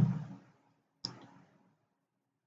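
A single sharp computer mouse click about a second in.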